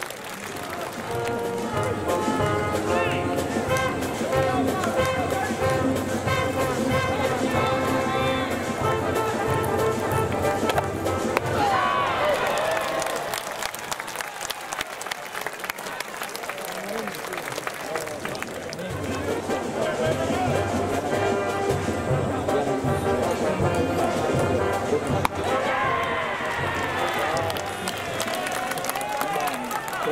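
Music and voices from a baseball-stadium crowd: sustained musical notes for about the first ten seconds, then voices, and later a low repeating beat under more voices.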